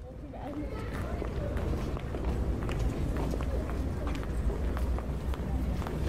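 Footsteps on stone paving, about two a second, over a low steady outdoor rumble.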